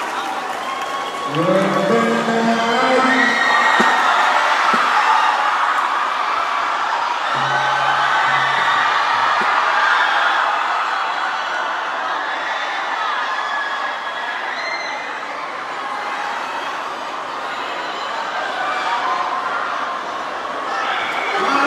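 Large concert crowd cheering and shouting without a break. A single man's voice stands out over it for a couple of seconds near the start, and a lower held voice or note shows briefly just before the middle.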